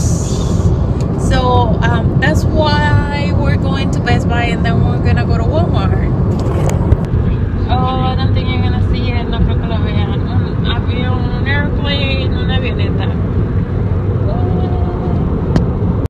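Steady road and engine rumble inside a moving car's cabin, with voices over it.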